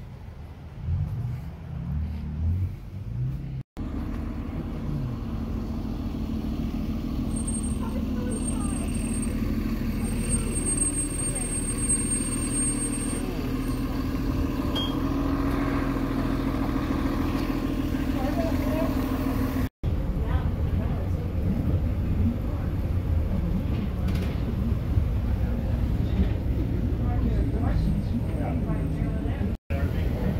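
A tour trolley's engine idling close by, a steady low rumble with a thin high whine for a few seconds in the middle. After a cut, a low rumble of wind on the microphone.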